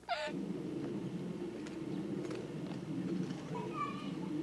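A young girl's crying wail ends in a sharp falling cry right at the start. After it comes a steady low rumbling noise with a few faint clicks and a brief high note near the end.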